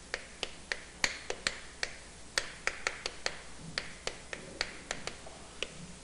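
Chalk clicking against a chalkboard while writing: an irregular run of short, sharp clicks, several a second.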